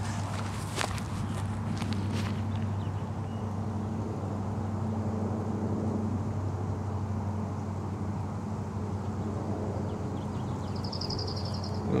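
Footsteps and rustling in dry grass for the first two seconds or so, over a steady low hum. A short high trill sounds about a second before the end.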